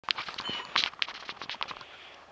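Irregular crackling, rustling and sharp clicks, fading toward the end; no engine is running.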